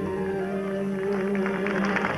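Harmonium holding a steady sustained chord after the sung line ends; audience clapping begins near the end.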